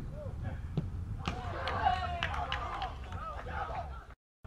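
A football kicked at a penalty, a single sharp thump just under a second in, followed by several voices shouting on the pitch with a few sharp claps, over a low wind rumble on the microphone.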